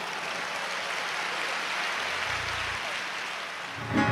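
Audience applauding: a steady, even wash of many people clapping.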